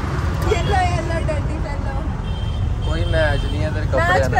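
Steady low rumble of an auto-rickshaw running through traffic, heard from inside its open passenger cabin, with wordless voices coming and going over it.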